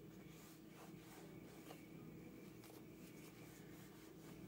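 Near silence: faint rubbing of a dry clothes iron sliding back and forth over a cotton dish towel, over a low steady hum.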